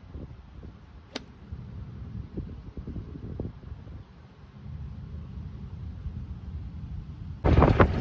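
A single sharp strike of an iron on a golf ball about a second in, a chunked shot with the club catching the turf behind the ball. Wind rumble on the microphone runs underneath.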